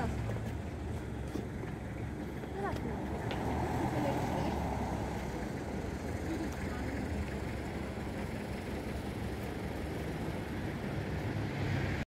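Steady low rumble of town ambience at night, with faint voices of people now and then.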